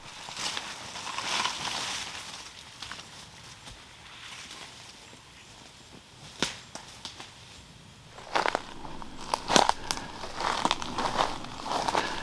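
Footsteps pushing through ferns and dead brush on a forest floor: leaves and branches rustling against the body, then dry twigs and sticks cracking underfoot several times in the second half.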